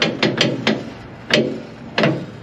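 Truck fifth-wheel release handle being yanked against its stop, metal clanking in a quick run of knocks, then one more just past the middle. The handle will not release: the fifth-wheel jaws stay locked on the kingpin.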